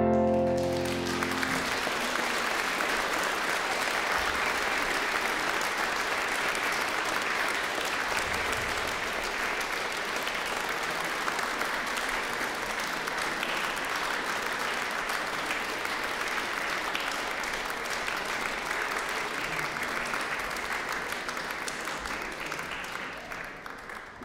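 Audience applauding as the final sung note and piano chord die away in the first second or so. The applause goes on steadily and fades out near the end.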